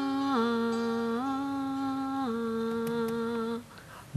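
A slow, wordless melody hummed in long, steady held notes of about a second each, stepping up and down in pitch with short slides between them, and ending near the end.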